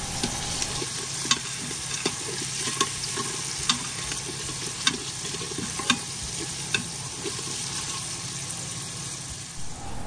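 Diced onion sizzling in oil in an Instant Pot on its sauté setting, the onion being stirred, with several sharp clicks of a utensil against the pot.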